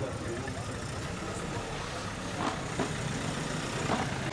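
A motor vehicle's engine running steadily at a low rumble, with a few faint clicks over it.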